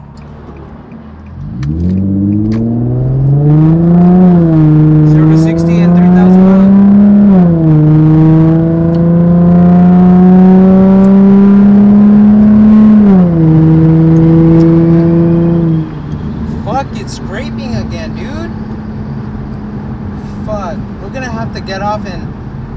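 Infiniti G35's 3.5-litre V6 heard from inside the cabin, accelerating hard with its pitch climbing. It drops back three times on upshifts, then the throttle is lifted about sixteen seconds in and it settles to a quieter highway cruise.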